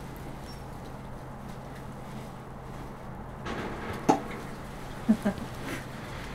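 Steady low electrical hum in a small room, broken about four seconds in by a sharp click and, a second later, two short low sounds in quick succession.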